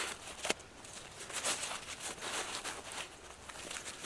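Fabric rustling as the bunched mesh bug net is handled and pushed into its small stuff sack, with a single sharp click about half a second in.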